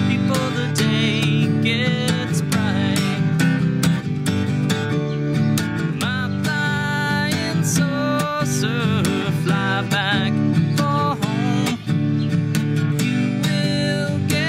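Masterbilt acoustic guitar strummed in a steady folk-country rhythm during an instrumental break between sung verses. A melody line with bending, wavering pitch plays over the strumming.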